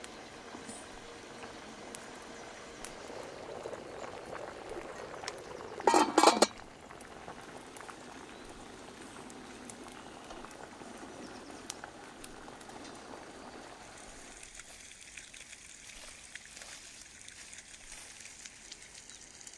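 Samovar boiling: a steady bubbling hiss that dies down about fourteen seconds in. About six seconds in, a brief loud sound cuts across it.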